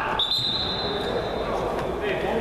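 Referee's whistle: one steady, high blast lasting about a second and a half, over players' voices echoing in the hall.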